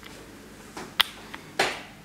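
Faint room tone with a single sharp click about halfway through, followed by a short hissing noise that fades quickly.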